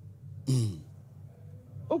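A person clears their throat once, briefly, about half a second in.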